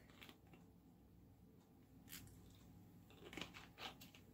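Near silence: room tone, with a few faint short ticks about two seconds in and again near the end.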